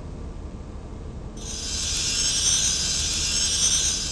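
A high, shimmering sparkle sound effect for the glowing star marks, starting about a second and a half in and holding steady. A low hum runs underneath.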